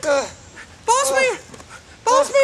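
A man whimpering and crying out in pain in a high voice: a cry trailing off at the start and a longer, arching wail about a second in.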